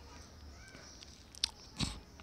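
Two short mouth clicks, lip smacks picked up close to a headset microphone, the second the louder, over a steady low electrical hum.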